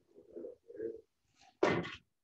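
An IOLab sensor's force probe knocking once against a hard surface about one and a half seconds in: a single short, sharp impact, after a couple of fainter muffled handling sounds.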